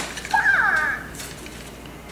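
Hatchimal toy making a short electronic chirp through its small speaker: a warbling call of falling pitch glides, under a second long, just after a light click.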